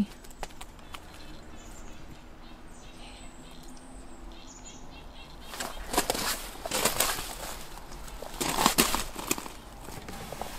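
Footsteps crunching on gravel: a few steps in the second half, after a quiet start.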